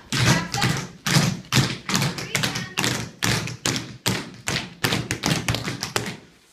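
Tap shoes striking a wooden floor in a quick, uneven run of taps and heavier thuds.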